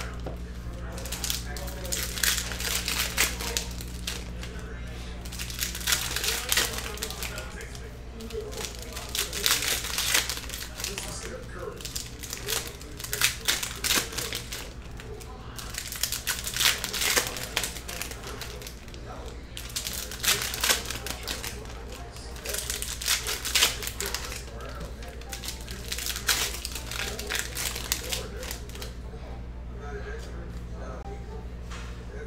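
Foil trading-card pack wrappers crinkling and tearing as packs are opened and cards handled, in repeated irregular bursts over a steady low hum.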